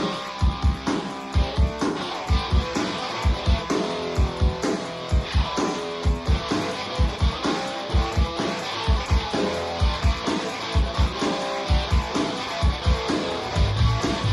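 Band music: guitar over a steady, regular drum beat, with no singing, and a strong low bass part coming in near the end.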